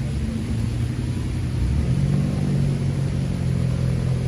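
Low hum of a road vehicle's engine, its note stepping up and growing louder about two seconds in as it accelerates.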